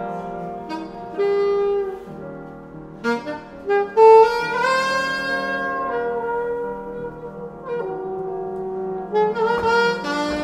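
Alto saxophone improvising in a jazz vein, mostly long held notes, with a loud attack about four seconds in followed by a climb to a higher held note.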